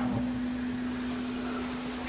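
A steady low hum on a single pitch, with faint room noise, in a pause between a man's sentences.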